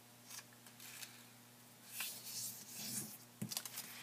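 Faint rustling of a sheet of origami paper being folded in half and creased by hand, starting about halfway through, with a short soft tap near the end.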